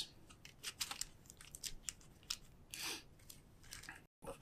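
Faint handling noise: scattered light clicks and crinkles as small plastic-wrapped chemical light sticks and cord are handled and packed into a small metal tin.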